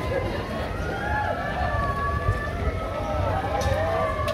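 A crowd of marathon runners passing on a road, with footfalls, overlapping voices and some drawn-out calls.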